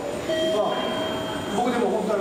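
A man speaking, with a thin steady high tone sounding for about a second in the middle.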